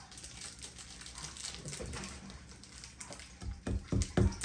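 Small clicks of nails and wooden kit pieces being handled, then a few sharp hammer blows driving a small nail into soft wood near the end.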